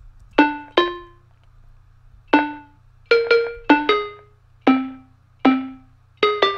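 A single-line synth melody from an Omnisphere patch: about nine short, sharply struck notes at uneven intervals and varying pitch, each dying away quickly. It is MIDI generated by the AudioCipher plugin from the words "bring it home" in C minor, with randomized rhythm.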